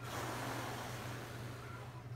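A person blowing a steady stream of breath over freshly painted toenails to dry the polish: a soft rushing hiss that starts suddenly.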